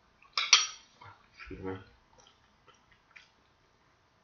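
A spoon clinks sharply twice against an oatmeal bowl, followed by a short voiced hum and a few faint mouth clicks of chewing.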